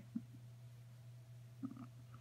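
Near quiet with a steady low hum, broken by two faint, brief low sounds: one just after the start and one near the end.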